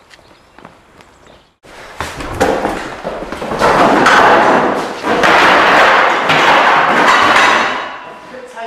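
Loud thumps and clattering footsteps that start about two seconds in and are heaviest in the second half.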